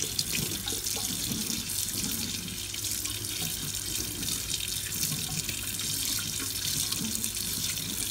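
Kitchen tap running steadily into a stainless steel sink while a melamine foam magic sponge is squeezed and rinsed under the stream.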